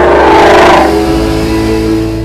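Ford Mustang GT accelerating with a rush of engine and road noise that starts suddenly, is loudest about half a second in, then fades, over background music.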